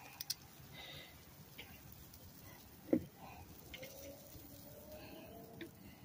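Quiet background with a bird cooing faintly in the second half. Metal tongs click twice just after the start, and one short knock comes about three seconds in, the loudest moment.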